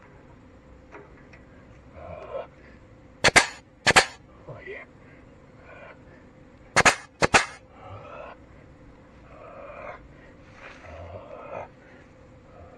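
Air-powered grease gun firing grease into a tractor's grease fitting: two pairs of short, sharp air bursts, the shots in each pair about half a second apart and the pairs about three seconds apart.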